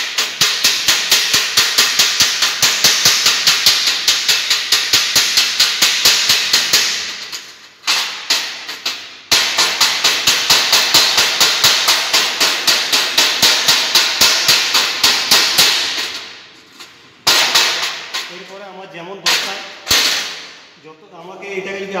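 Chipping hammer striking the slag off a fresh arc-weld bead on steel plate: rapid, sharp metallic taps several a second, in two long runs with a brief pause between them, then a few shorter bursts near the end.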